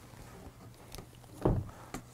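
Faint handling sounds of paper-backed fabric being moved on a cloth-covered table: a couple of light ticks and one soft thump about midway.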